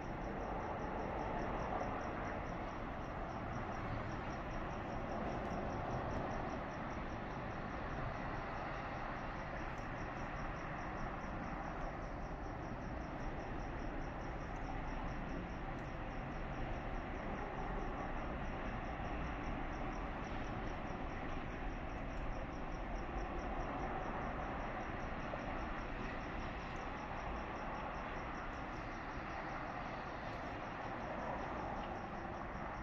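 A cricket chirping in a steady, evenly repeated high pulse, over a constant low background hum.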